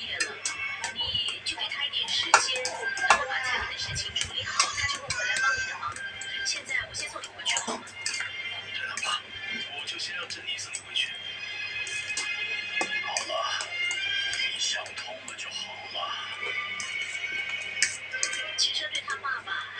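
Background music with speech over it, with sharp clinks of a metal fork on a metal plate about two and three seconds in.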